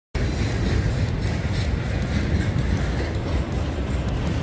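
Intermodal freight train carrying shipping containers passing by, a steady noise of wagons rolling on the rails.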